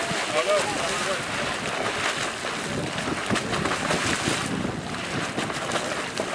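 Bulger's Hole Geyser erupting: hot water bursting up from its pool and splashing back down in a continuous, irregular spatter.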